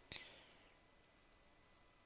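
Near silence: faint room tone, broken at the very start by a single sharp computer-mouse click and a brief soft hiss.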